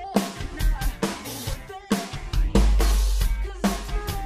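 Drum kit played along with a recorded song: snare and bass drum strikes over the track. A deep bass comes in about two and a half seconds in.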